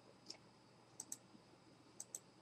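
Near silence with a few faint, short clicks from a laptop's controls as the slideshow is moved on to the next slide.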